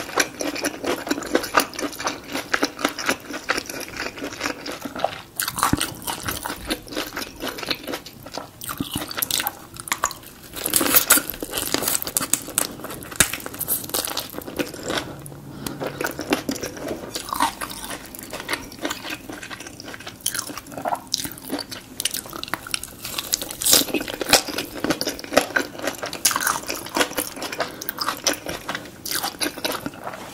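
Close-miked chewing of a spring roll, with many small crisp crunches and wet mouth sounds.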